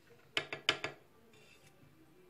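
A thin clear plastic chocolate mold crackling under the fingers: a quick run of four or five sharp clicks about half a second in, then a faint rustle.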